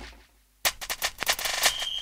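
Electronic intro sound effects: a booming hit fades out, and after a brief gap a run of sharp clicks speeds up into a rapid rattle, joined near the end by a steady high beep.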